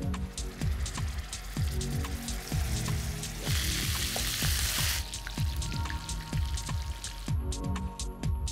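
Music with a steady kick-drum beat. About three and a half seconds in, a second and a half of sizzling cuts in: minced-meat patties frying in oil in a pan.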